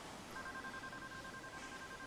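Mobile phone's call-ended tone heard through the earpiece after a hang-up: two steady electronic tones sounding together for about a second and a half.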